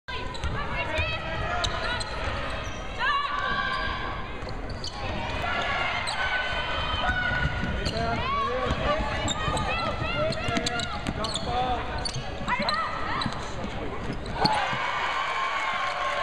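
Live court sound from a basketball game: a ball dribbled on a hardwood floor, with sneakers squeaking and players' voices throughout, in a steady mix.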